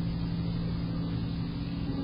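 A steady low hum with several fixed pitches, running evenly without change.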